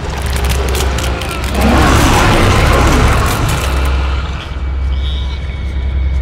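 A child screams for about a second and a half, over a low, steady rumbling drone in the horror score.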